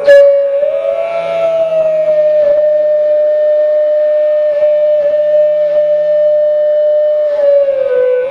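Indian flute music: a bamboo flute holds one long note, bending slightly upward about a second in and then held steady, over a low drone. A plucked string stroke sounds right at the start.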